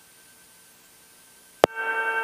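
Faint steady hiss of the cockpit audio feed. About one and a half seconds in comes a sharp click as the radio transmit button is keyed, followed by a steady buzzing hum.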